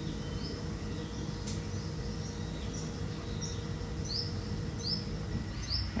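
Steady low background hum, with a bird repeating short, high, rising chirps, about one a second in the second half.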